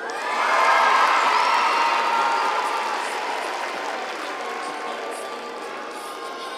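Arena crowd cheering and applauding, with many shouting voices. It swells sharply just after the start, peaks about a second in, then slowly dies down.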